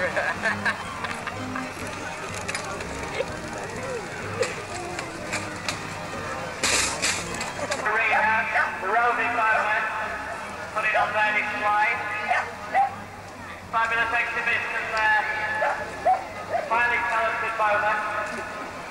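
Indistinct talking that comes in louder bursts from about eight seconds in, with a short harsh noise about seven seconds in.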